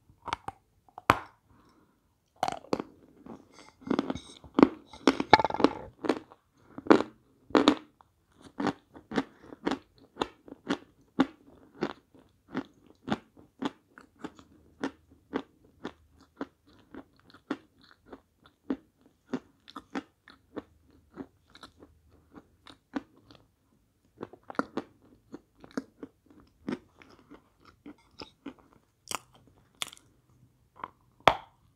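A person biting off and chewing a lump of edible chalk. There is a burst of loud crunching in the first few seconds, then steady crunchy chewing at about two chews a second, and another bite near the end.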